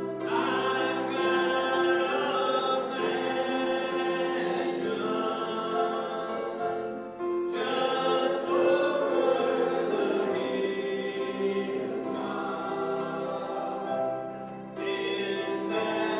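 Southern gospel trio singing live in harmony, male and female voices over electric bass and accompaniment, with brief breaths between phrases about seven and fifteen seconds in.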